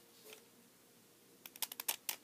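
Plastic 3x3 Rubik's cube layers being turned by hand. After one faint click, there is a quick burst of about six or seven sharp clacks in the last half second.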